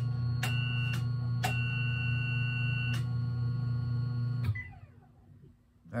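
A home-built ripple control transmitter sends a decabit telegram: a loud steady mains hum, and over it a high-pitched signal tone keyed on and off in half-second bit pulses, with a click at each switch. This is a channel 10 'on' command, which the receiver decodes as +10. The hum cuts off about four and a half seconds in, when the telegram ends.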